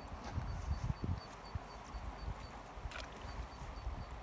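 Footsteps and knocks of a person stepping down a wet, muddy riverbank to the water's edge, with a couple of sharp clicks about three seconds in. A faint high-pitched ticking repeats about four times a second throughout.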